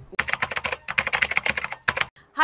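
Computer keyboard typing, a quick run of key clicks that ends with one louder click just before the end.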